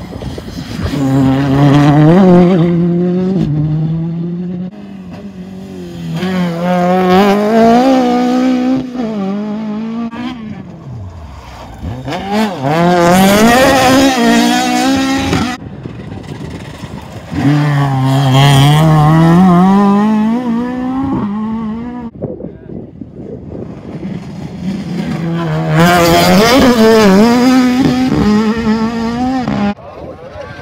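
Rally cars at full throttle on a tarmac stage, engines revving hard, the note climbing and dropping back through gear changes. There are about five loud passes, each a few seconds long, with sudden breaks between some of them.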